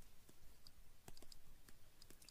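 A scatter of faint, irregular clicks and taps from a stylus writing on a digital pen tablet.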